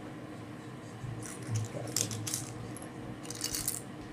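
Small plastic Lego pieces clicking and clattering against each other and the tabletop as a hand sorts through them, in two spells of quick clicks, one about a second in and one near the end.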